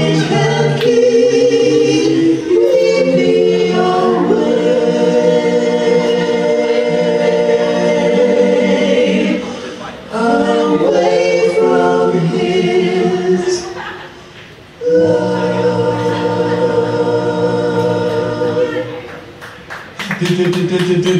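A choir singing slow, long-held notes in three phrases, breaking off briefly about ten seconds in and again near fifteen seconds.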